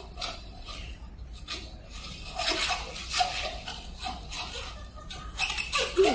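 Latex modelling balloon being twisted by hand, giving scattered short squeaks and creaks.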